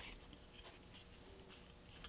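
Near silence, with a few faint light taps and rustles of small card pieces being handled and set down on a cutting mat.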